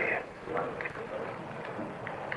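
Hiss of a recorded telephone line, with a faint muffled voice about half a second in.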